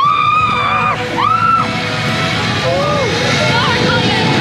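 Zipline riders yelling in flight: one long, high-pitched scream at the start, then a shorter cry and a few lower whoops, over steady wind noise on the microphone.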